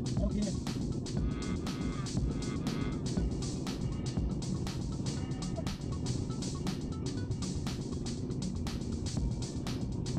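Music with a steady beat and a singing voice, over a continuous low rumble of road and engine noise in a moving car.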